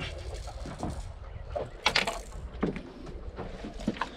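Low, steady rumble of wind and water around a small fishing boat drifting with its motor off, with a short knock about two seconds in.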